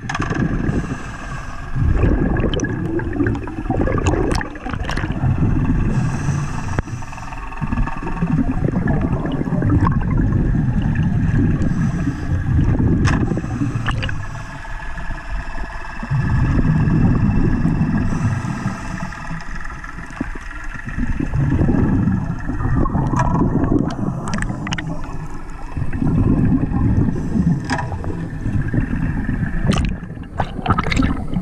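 Muffled underwater water noise picked up by a submerged camera moving through lake weeds. A low rushing sound swells and fades every four to five seconds, under a faint steady whine and a few sharp clicks.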